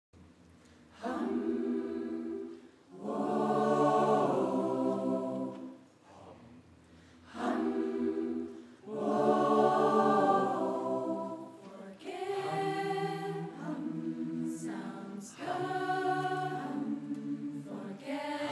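Choir singing sustained chords in phrases separated by short breaths, the singing growing more continuous in the last third.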